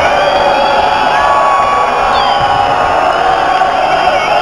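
Rock concert audience cheering and shouting, many voices yelling and whooping over one another in a loud, steady din.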